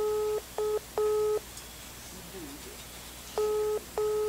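Telephone ringback tone heard through a smartphone's loudspeaker: a steady mid-pitched tone in short double pulses. One pair sounds at the start and the next comes about three seconds later, with roughly two seconds of silence between: the call is ringing at the other end and has not yet been answered.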